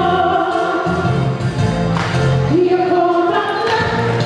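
A woman singing a Filipino pop song through a microphone over amplified accompanying music, with long held notes that slide up into pitch.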